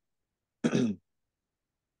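A man clears his throat once, briefly, about two-thirds of a second in.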